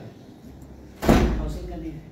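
A single loud bang about a second in, with a low rumble dying away over the following second.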